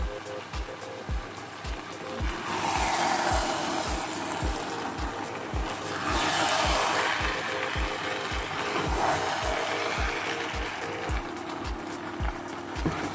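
Background music with a steady beat runs throughout. Over it come two spells of hissing sizzle lasting a few seconds each, one starting about two seconds in and one about six seconds in, as spaghetti is stirred into a hot meat sauce in a non-stick frying pan with a wooden spatula.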